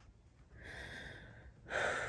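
A woman breathing audibly: a soft breath in, then a louder breath out like a sigh near the end.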